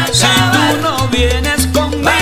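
A salsa orchestra playing, with a repeating bass line under sharp percussion strokes.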